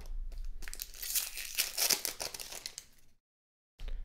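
Trading-card pack wrappers crinkling and tearing as packs are opened and the cards handled: a run of small crackles and clicks. The sound cuts out completely for about half a second near the end.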